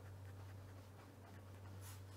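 Faint pen-on-paper writing: light scratching strokes of a pen writing a short word by hand, over a steady low hum.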